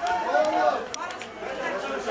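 Crowd chatter: several people talking and calling out at once, with two brief sharp clicks about a second in.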